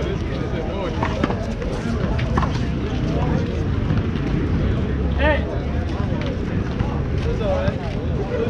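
Indistinct chatter of people standing around, over a steady low rumble, with a brief raised call about five seconds in.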